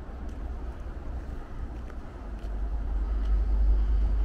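Steady low rumble of city road traffic, growing louder near the end.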